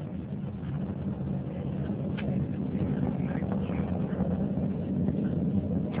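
Delta II 7425 rocket in powered flight, its first-stage main engine and four solid rocket motors heard from the ground as a low, steady noise that grows slowly louder.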